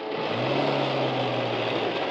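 A motor vehicle engine running with a steady low hum that swells in about a quarter second in, over a film score.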